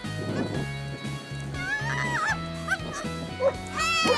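Background music, over a small dog's high-pitched yips and barks as it runs an agility course: a few short ones in the middle and a louder run of yips near the end.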